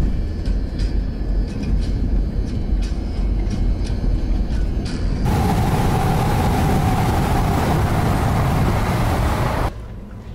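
Car driving at speed: a low road rumble inside the cabin with scattered light clicks. About five seconds in it gives way to loud rushing wind and tyre noise, with the microphone held out of the open window, and this cuts off suddenly near the end.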